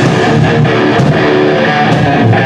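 Thrash metal band playing live: distorted electric guitar riffing over drums, loud throughout.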